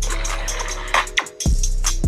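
Hip-hop track playing from a 2020 MacBook Air's built-in speakers: a deep bass with a kick about twice a second, dipping briefly a little past a second in.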